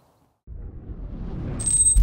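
An electronic whoosh transition effect: a noisy swell that rises in loudness from about half a second in, topped by a high bright ringing tone in its last half second, building into an electronic music sting.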